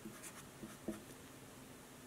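Felt-tip marker writing: a few faint scratching strokes, with a light tap a little under a second in.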